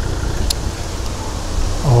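Outdoor street background: a steady low rumble with an even noisy hiss over it, and one brief faint click about half a second in. A man's voice starts just at the end.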